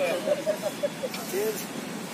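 A person's voice speaking in short syllables for about the first second, with one more short call about a second later, then steady outdoor background noise with a traffic hum.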